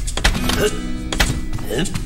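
Cartoon soundtrack: background music with a small character's wordless squeaks and grunts, and a few sharp knocks and thuds as cabinet doors are handled and he climbs the galley drawers.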